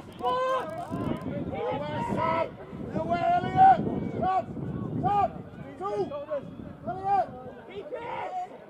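Voices shouting short calls one after another during open play in a football match, over the open-air noise of the ground.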